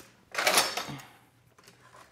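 Kord 12.7 mm heavy machine gun being cocked with its mount's cable charging handle: the cable is drawn out and the bolt pulled back to lock open, a single metallic rasping clatter of under a second that trails off.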